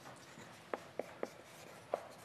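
Chalk writing on a blackboard: faint scratching with a few short sharp taps, three in quick succession in the middle and one more near the end.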